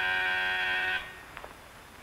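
Electric buzzer giving one steady, even-pitched buzz that cuts off about a second in.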